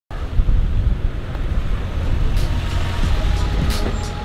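A car's engine running with a low rumble, with wind on the microphone and a few short swishes near the end.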